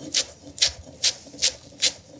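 A kitchen knife chopping celery leaves on a wooden cutting board: five even strokes, about two and a half a second.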